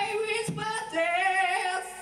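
Lead singer of a live rock band holding one long high sung note with vibrato from about half a second in, with the band's instruments mostly dropped away.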